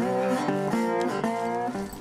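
Guitar music: a few held chords or notes, changing about every half second.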